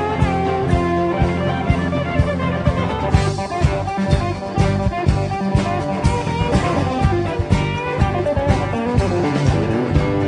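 Live country band playing an instrumental break between verses: guitars over a drum kit keeping a steady beat.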